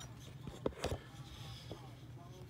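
A few short taps and clicks from hands handling a foil booster pack, the loudest a little over half a second in.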